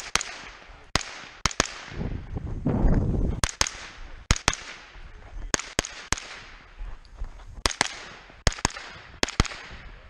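Gunshots fired mostly in quick pairs a fraction of a second apart, each crack followed by a short ringing echo: double taps on each target. A louder rumbling noise fills a pause in the firing between about two and three and a half seconds in.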